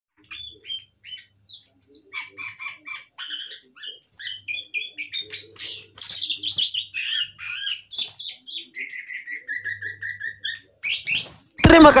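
Caged songbird singing a varied song of quick chirps and whistles, including a rapid run of evenly repeated notes near the end. Music and a voice cut in just before the end.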